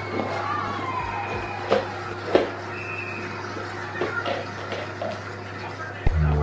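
A plastic sweet tub and its clear plastic lid being handled by a small child, with two sharp knocks about a second and a half and two and a half seconds in. Faint music from a television plays underneath, over a steady low hum.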